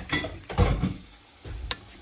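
A ladle stirring a pot of tomato broth, scraping and knocking against the pot, with sizzling from hot garlic oil just poured in from a frying pan.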